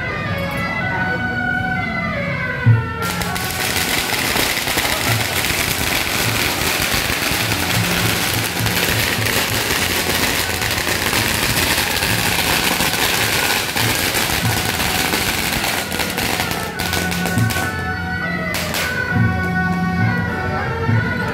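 A long string of firecrackers going off in a rapid, unbroken crackle, starting about three seconds in with a sharp bang and running until a couple of seconds before the end. Music plays under it and is heard clearly before and after the firecrackers.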